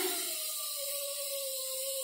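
Steam hissing steadily from a pressure cooker's vent, with a steady tone under the hiss that slowly sinks in pitch.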